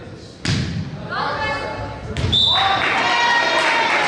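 Volleyball served with a sharp hit about half a second in and struck again just after two seconds, in an echoing gym, with players shouting calls on the court after each hit.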